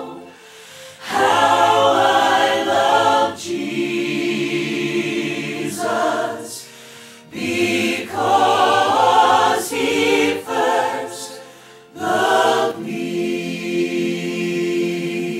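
Church choir singing a hymn in phrases, with brief pauses between them.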